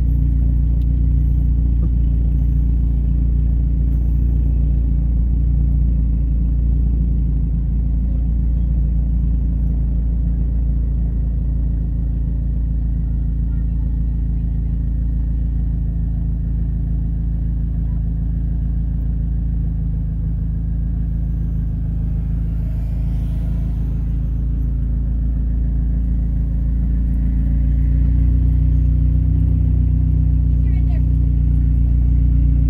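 A 2001 Saab 9-5 Aero's turbocharged four-cylinder engine idling, heard from inside the cabin as the car creeps forward in slow traffic: a steady low hum that swells slightly near the end.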